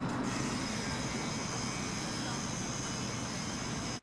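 Heavy construction machinery running at a demolition site, a constant engine drone with a hiss above it that holds steady without a break.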